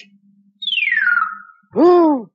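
A cartoon sound effect: a buzzy, whistle-like tone sliding down in pitch over about a second. Near the end a puppet monkey gives a short vocal hoot.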